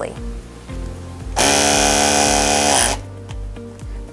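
A DMC HXE4-series battery-powered crimp tool's motor running through one crimp cycle: a loud, even whir of about a second and a half, starting about a second and a half in and dropping in pitch as it stops.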